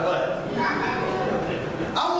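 A person's drawn-out voice: a long held vocal sound, amplified in a large hall.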